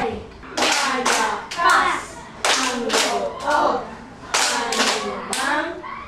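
Children clapping their hands in a rhythm while chanting together, a clap or two about every second.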